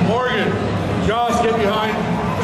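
A man's voice talking in two short phrases over a steady background din of a busy hall.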